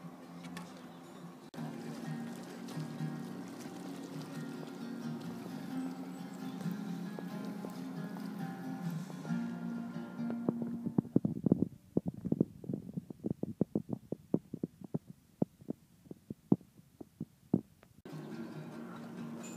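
Steel-string acoustic guitar being played, with strummed chords ringing on for the first half. From about ten seconds in it changes to a quick run of separate plucked notes, each with a sharp attack and a short decay.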